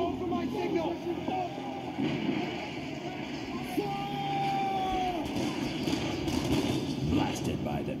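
Film sound excerpt of men shouting orders over a dense din of battle sound effects, with one long drawn-out shout about four seconds in, the call to fire the cannons.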